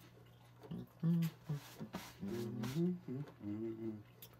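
A man's voice: a short 'oh' and several hummed 'mm-hmm' sounds, each rising and falling in pitch, with brief breathy noises between them.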